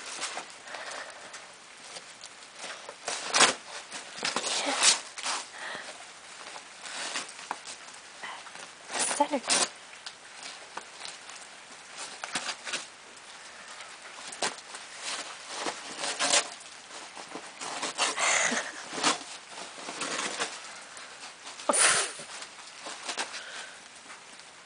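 A Newfoundland dog ripping and rustling brown wrapping paper and hay as it tears open a parcel, in irregular bursts of tearing with quieter rustling between.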